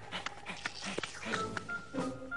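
Cartoon background music under a string of short vocal sounds from an animated dog.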